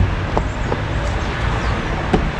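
Steady outdoor rumble of city road traffic, with a few faint clicks.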